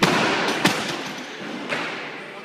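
Loaded weightlifting barbell dropped onto the platform: a loud crash as it lands, then smaller knocks about half a second in and again near the end as it bounces and settles.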